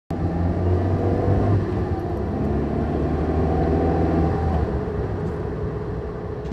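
Car engine and road noise heard from inside the cabin: a steady low hum that eases off slightly about four and a half seconds in.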